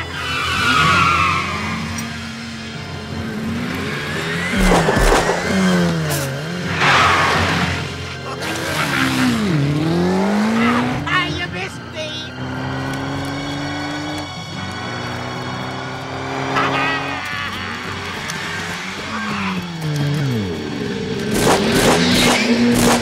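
A go-kart engine revving up and down again and again, with tyre squeals and skids, over film music.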